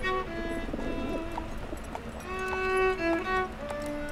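Solo violin playing a slow melody of held notes that step up and down in pitch.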